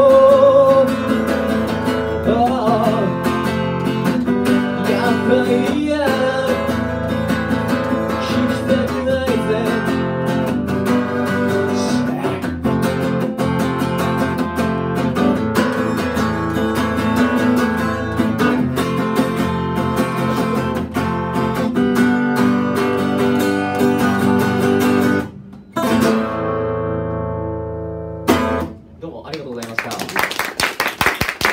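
Acoustic guitar strummed steadily under a man's singing as a song plays out. It ends on a last strummed chord that rings out and dies away, and clapping starts just at the close.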